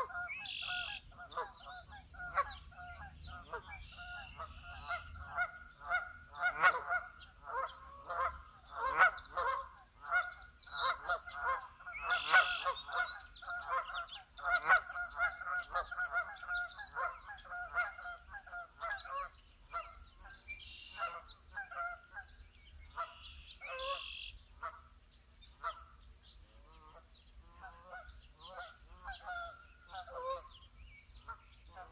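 A large flock of waterfowl honking, with many calls overlapping at once. The calling is thickest in the middle and thins out near the end, with a few higher bird calls scattered through.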